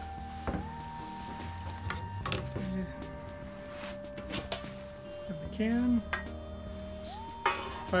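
Metal clinks and taps from a tin canister being handled, with its lid coming off near the end, over background music of held tones.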